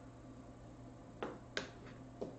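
Quiet room with a low steady hum, broken by three short, faint clicks in the second half.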